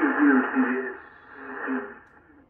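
A voice received on 40-metre single-sideband through an HF transceiver's loudspeaker: thin, narrow-band speech with no lows or highs, loud for about a second and then trailing off and fading out near the end.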